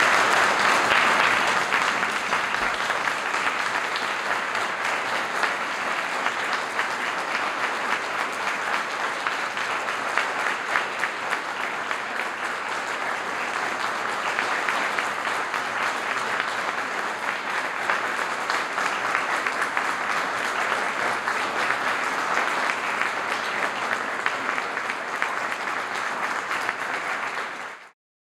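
Large audience applauding steadily, loudest in the first seconds, then cutting off suddenly at the end.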